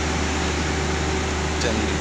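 Steady, loud drone of running palm oil mill machinery, around the chain-and-sprocket drive of a nut-and-shell bucket elevator. It holds a constant low hum with a steady tone above it.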